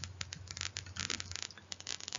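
Faint, rapid, irregular clicking and scratching over a low steady hum.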